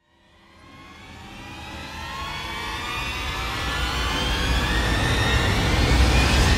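A cinematic riser sound effect: a deep rumble under many upward-gliding tones, swelling steadily louder from silence, like a jet spooling up.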